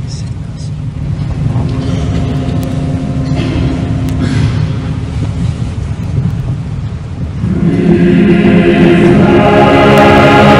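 A choir singing held notes, faint under a low rumble at first, swelling much louder about seven and a half seconds in.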